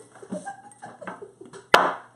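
Small glass bowl of toothpicks set down on a wooden tabletop, one sharp clack near the end, among faint quiet laughter.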